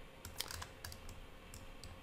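Faint, irregular clicks of a computer keyboard and mouse in use, over a faint low hum.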